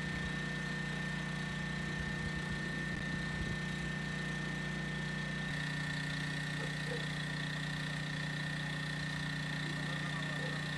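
An engine running steadily: a low, even hum with a thin, steady high tone above it. Its tone shifts slightly about five and a half seconds in.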